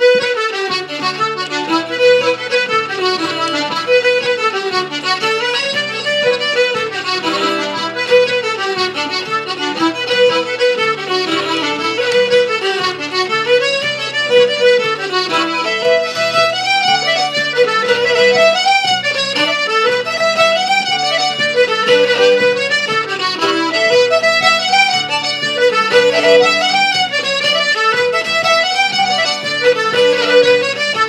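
Traditional Irish trio of fiddle, button accordion and acoustic guitar playing a set of jigs, starting suddenly at the beginning. The fiddle and accordion carry the fast melody together over guitar chords.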